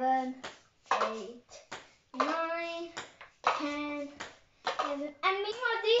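A child's voice singing or vocalising in short held notes with gliding pitch, no clear words, with a few short taps between the notes.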